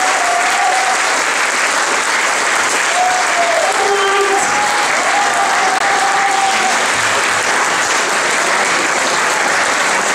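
Concert audience applauding steadily after a live set, with a few drawn-out calls over the clapping.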